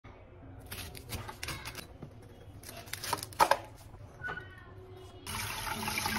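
Kitchen knife cutting through a cauliflower's stalk and leaves on a cutting board: a series of short cutting and snapping sounds, the two loudest about three and a half seconds in. About five seconds in, a tap starts running into a bowl in a sink.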